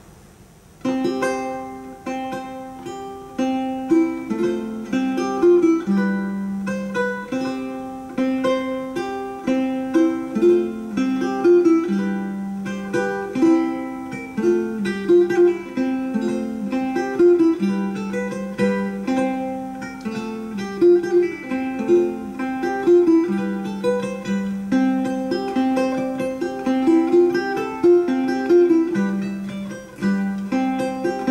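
Solo renaissance guitar, a small four-course instrument, played fingerstyle: a set of variations on a Spanish theme that begins about a second in, with a plucked melody over a bass pattern that keeps returning.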